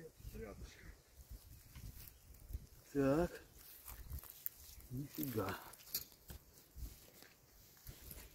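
A man's voice, two brief wordless murmurs about three and five seconds in, over faint rustling and small handling clicks.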